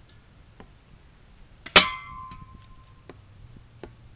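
An airsoft BB strikes a hanging aluminium soda can about two seconds in: a sharp metallic clang that rings on for about a second. A few faint ticks come before and after it.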